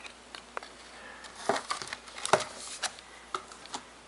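Light clicks, taps and rustles of the box set's book and packaging being handled and moved on a tabletop.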